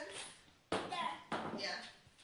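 A toddler laughing in two sharp bursts, a little under a second in and again about half a second later.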